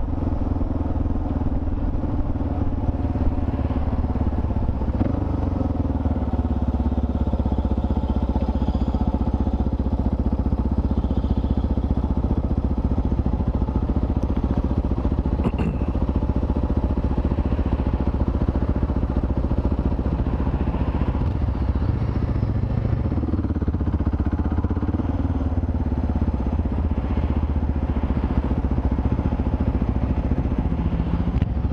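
Motorcycle engine running with a steady low rumble, heard from the rider's seat, its pitch shifting as the bike slows in traffic and comes to a stop.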